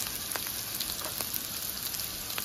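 Oil sizzling steadily in a nonstick frying pan as seasoned potato chunks sauté, with a few scattered faint ticks.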